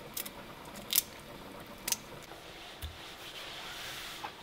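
Raw prawns being peeled by hand: four small sharp clicks of shell coming away, about one a second, low in level.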